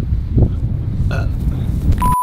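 Wind buffeting the microphone with a steady low rumble, and a brief throaty vocal sound about a second in.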